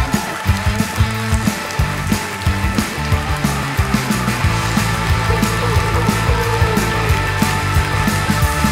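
Live band playing an instrumental: drums keeping a steady beat under bass guitar and keyboard.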